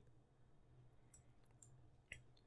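Near silence: faint room hum with a few soft, scattered clicks.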